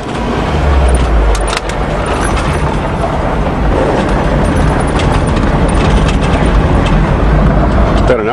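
1984 Nissan 4x4 pickup truck driving on a gravel road, heard from inside the cab with the window down: steady engine and tyre-on-gravel noise with a deep rumble, and a few sharp clicks.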